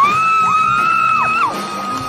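A high whoop that slides up and holds one long note for about a second and a half before dropping away, over live band music in a large hall.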